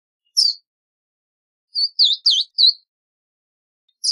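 Verdin calling: a single sharp, high note, then about a second and a half later a quick run of four high notes.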